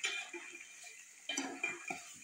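A metal spoon scraping and clinking against an aluminium pot while stirring chicken pieces into masala, in two bouts with brief metallic ringing.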